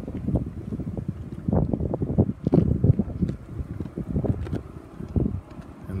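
Wind buffeting the microphone in uneven low rumbling gusts.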